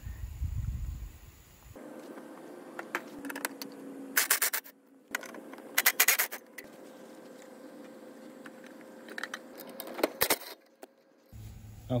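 Cordless impact driver hammering in three short bursts, about four, six and ten seconds in, undoing the bolt that holds the centrifugal clutch on the engine's crankshaft.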